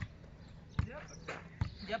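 Soccer ball being juggled off the foot and thigh, a short thud with each touch: three touches a little under a second apart.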